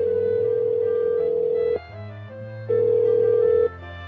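Telephone ringback tone: a steady, even electronic tone rings for about two seconds, breaks off briefly, then rings again for about a second, as a call rings through to a voicemail line.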